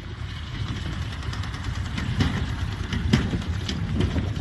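Travel Air 4000 biplane's engine running at low power as the plane rolls across the grass, growing louder as it comes closer.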